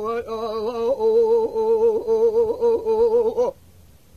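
A male Kurdish dengbêj singing a kilam with no accompaniment: one long held line, its pitch wavering in quick ornaments, that breaks off about three and a half seconds in.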